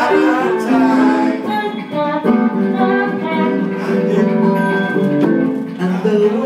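A man singing an improvised song into a handheld microphone, with acoustic guitar accompaniment.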